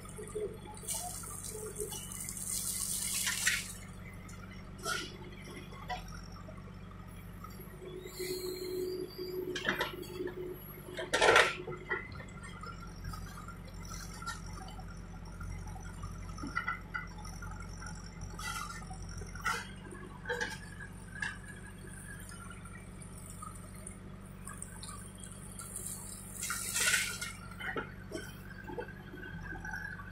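JCB backhoe loader's diesel engine running steadily as its backhoe digs and swings soil. Loads of earth and stones pour and clatter into the steel tipper bed, with knocks from the bucket and arm; the loudest crash comes about 11 seconds in, and there are longer rushing pours near the start and near the end.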